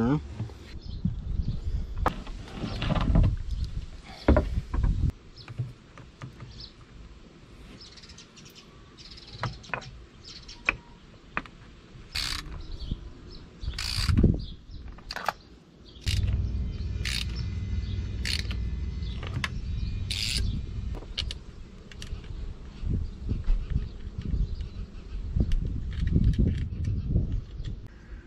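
Scattered metallic clicks and knocks of hand tools and cable lugs as heavy cables are fastened onto boat battery terminals, with handling noise. A low steady rumble runs through the second half.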